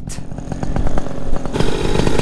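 Paramotor engine running under power in flight, with wind rushing on the microphone. The high hiss cuts out for about the first second and a half and then comes back while the engine keeps going.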